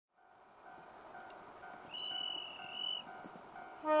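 Railway level-crossing warning bell ringing about twice a second as the sound fades in, with a brief high steady tone in the middle. Near the end a diesel locomotive's horn starts, the loudest sound.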